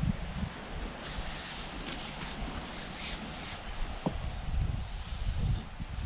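Wind blowing across the microphone, a steady hiss with low rumbling gusts, and one faint click about four seconds in.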